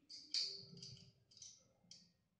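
Small metal hardware, a bracket with a nut and bolt, clicking together as it is handled: four short metallic clicks, the loudest about a third of a second in.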